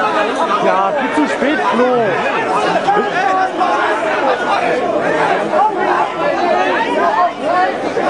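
A crowd of many voices talking and calling over one another at once, an excited babble with no single voice standing out.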